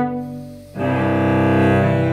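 Cello music: a sustained bowed note dies away, then new long low bowed notes come in together just under a second in.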